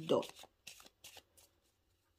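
A deck of cards being shuffled by hand: a few short, quick card clicks and riffles in the first second and a half.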